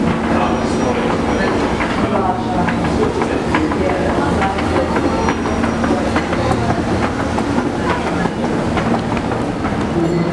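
Escalator running: a steady mechanical hum with rattling and clicking from the moving steps. Voices of people are heard around it.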